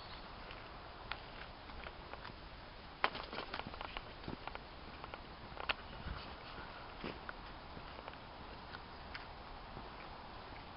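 Footsteps along a dirt trail through dry brush, with irregular light crackles and snaps.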